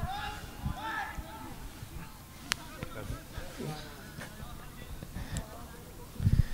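Faint, distant voices of footballers calling on the pitch, with one sharp knock about two and a half seconds in and a weaker one near the end.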